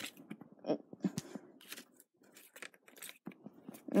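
Faint, scattered small clicks and short rustles of close handling noise, irregular and with brief gaps between them.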